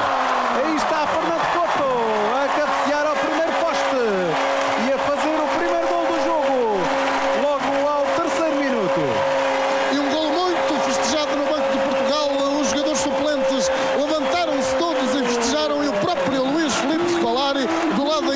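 Stadium crowd cheering and shouting after a goal, with a horn holding one long steady note from about two seconds in until near the end.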